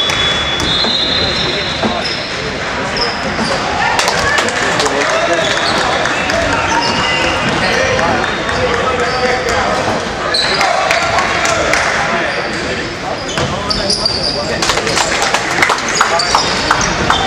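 Basketball bouncing on a hardwood gym floor, with the bounces coming in quick succession near the end as dribbling resumes. Short high squeaks and a steady hum of voices echo in the hall.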